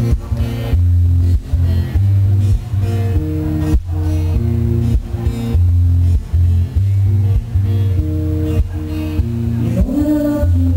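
Amplified guitar played live through a PA, strumming a song's intro in chords that change about once a second, with no singing yet.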